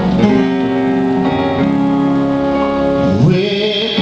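A man singing a slow gospel hymn over a sustained instrumental accompaniment. Near the end his voice slides up into a held, wavering note.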